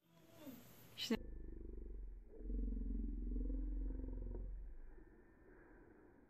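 A short laugh, then a low, rapidly pulsing rumble with a wavering pitch that lasts about three seconds and fades out.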